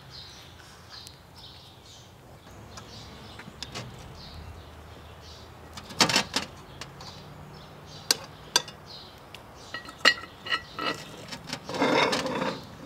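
Birds chirping in the background, then from about halfway a few sharp metallic clanks and some ringing as a lid lifter hooks and lifts the lid of an 8-inch Lodge cast iron Dutch oven heaped with charcoal.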